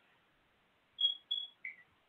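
After about a second of near silence, two short high-pitched beeps close together, then a brief lower chirp that falls in pitch.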